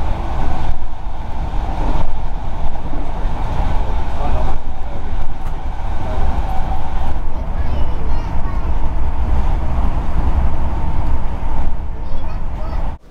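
Passenger train running at speed, heard from inside the carriage: a loud, steady rumble of wheels on rail with heavy low-end running noise.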